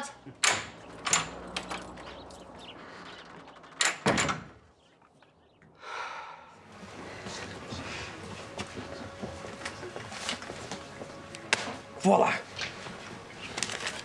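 A front door opening and then shutting with a single thud about four seconds in, followed by a café's steady background with scattered small clicks.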